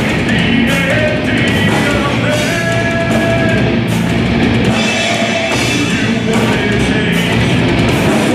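Live heavy metal band playing at full volume: distorted guitars, bass and drum kit with crashing cymbals, and a vocalist singing into the microphone.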